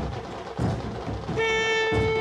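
Ceremonial band music: a few drum beats, then about one and a half seconds in a loud, long horn note sets in and holds steady in pitch.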